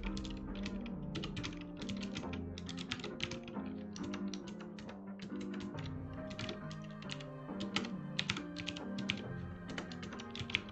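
Typing on a computer keyboard: irregular runs of quick key clicks over background music.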